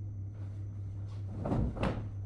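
Bedding rustling as a sheet or blanket is handled and spread on a bed, with two quick swishes of cloth near the end, over a steady low hum in the room.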